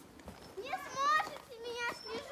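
A young child's high-pitched voice calling out, rising and falling in pitch, starting about half a second in.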